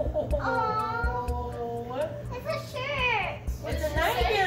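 A young girl's voice making drawn-out wordless sounds: a long held tone, then short falling squeals near the end.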